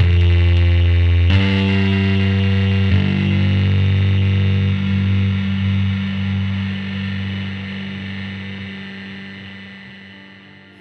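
Electric bass through the Wettmar Computer 2 digital fuzz pedal in its high-gain 'forbidden mode', a square-wave-sounding fuzz with lots of sustain. The bass plays a low note, changes note twice in the first three seconds, then lets the last note sustain and slowly fade out.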